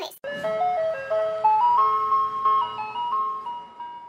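Short intro jingle: a simple melody of single clear notes climbing in steps, then settling on higher notes and stopping just before speech resumes.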